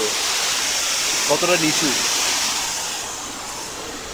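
A rushing hiss, strongest in the upper range, that holds for about three seconds and then fades, with a short spoken word about a second and a half in.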